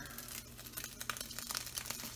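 Hot cooking liquid from ground beef crackling and sizzling with many fine pops in a lidded nonstick frying pan as it is tilted over a sink to drain.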